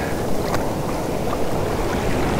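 Steady rush of shallow surf washing in foam over the sand, with low wind rumble on the microphone.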